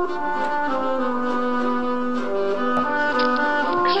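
Instrumental background music: long held notes that step to new pitches every second or so.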